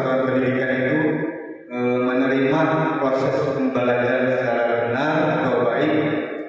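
A man speaking Indonesian, amplified through a handheld microphone, with a brief pause about a second and a half in.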